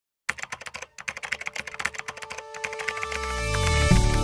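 Intro sound design: a rapid run of sharp clicks over a held tone, then music with a deep bass swelling in over the last second.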